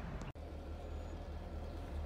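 A car engine idling: a low, steady rumble, cut off for an instant about a third of a second in.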